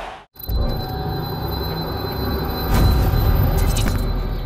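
End-card music sting after a brief dropout: a loud, deep bass drone with a thin steady high tone above it, swelling about three seconds in, with a couple of sharp hits near the end.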